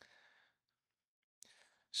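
Near silence in a pause in speech: a man's faint breath out at the start and a quick breath in about a second and a half in, just before he speaks again.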